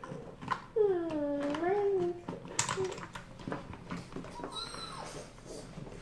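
A young child's drawn-out vocal sound, dipping then rising in pitch, about a second in. Then small clicks and taps of plastic toy eggs and playset pieces being squeezed and handled.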